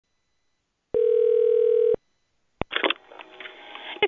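Telephone ringback tone heard through a phone line: a single steady ring of about a second, then a click as the call is picked up about two and a half seconds in, and a voice on the line starts just after.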